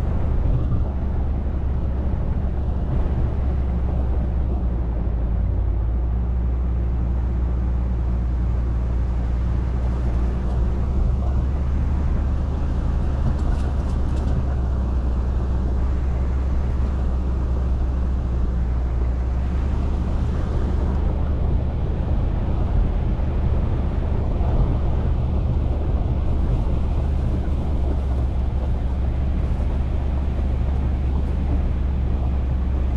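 Ram 2500 Power Wagon pickup driving slowly up a dirt track: a steady low engine drone with tyre noise over gravel, holding an even level throughout.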